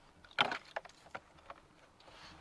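Buckets and ice handled at a frozen well: one sharp, crack-like knock about half a second in, then three lighter clicks.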